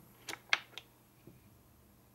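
Three sharp clicks in about half a second, the middle one the loudest, as a switch cuts the power to a homemade ballast running a Philips MasterColour CDM-T 70 W metal-halide lamp, putting out its arc.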